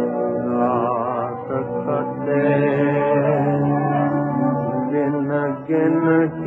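1930s Hindi film song recording with a narrow, dull tone: a melody with wavering vibrato moves over held accompanying notes, with no clear words.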